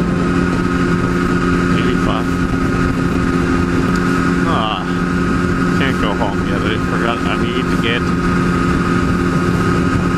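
Kawasaki ZX-10R inline-four engine cruising at highway speed, its note holding one steady pitch over a rushing wind and road noise.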